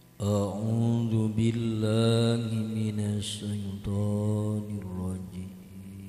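A man's voice chanting in long, drawn-out, ornamented notes in the manner of Islamic recitation, starting just after the beginning and fading away near the end.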